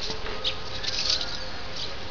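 Small birds chirping faintly, a few short high chirps over steady outdoor background noise.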